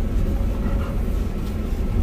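Steady low rumble of a lifted van driving slowly along a soft, sandy dirt trail, heard from inside the cabin: engine and tyre noise.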